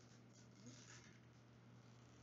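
Faint rustle of the thin plastic wrapping being peeled off a Zuru Mini Brands surprise ball, strongest just under a second in, over a steady low hum.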